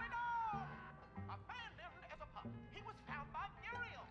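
Quiet background music: short gliding high notes that rise and fall, over a low bass line that comes in pulses.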